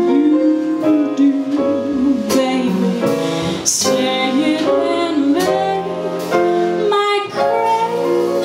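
Live band with piano playing a slow ballad, with a woman singing long held notes over sustained chords and a few light percussion strokes.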